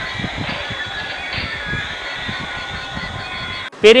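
Battery-operated light-up toy guns playing their electronic sound effects: several steady high tones over a low jumble. The sound cuts off just before the end.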